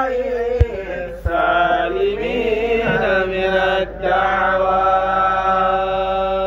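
A boy's voice chanting Arabic verse in long, drawn-out melodic notes, held and gliding. There are two short knocks in the first second and a half.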